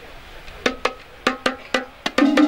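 Hand drums struck in sharp slaps: after about half a second of quiet, six crisp strokes with a short ringing tone, in an uneven rhythm.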